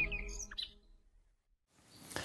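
A few quick, high bird-tweet chirps as a sound effect at the tail of a TV bumper jingle, the music fading under them; they end about half a second in, followed by about a second of silence.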